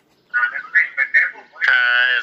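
Speech: a voice talking in short phrases after a brief pause, ending on one long drawn-out syllable.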